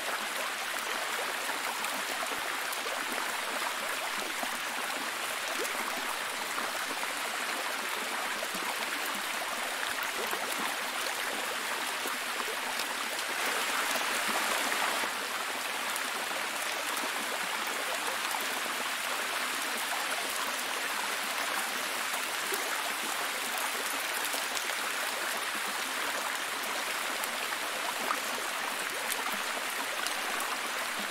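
A tiered waterfall cascading over mossy rock ledges, a steady rush of falling water that swells slightly for a moment about halfway through.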